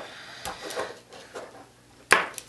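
Hands handling plastic quadcopter frame parts and wires on a tabletop: a few faint light clicks and rustles.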